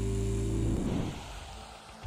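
A steady low hum with evenly spaced overtones, fading out from about a second in.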